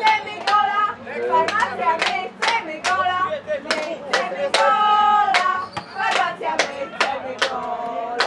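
Men's voices close to the microphone, in short bursts without clear words.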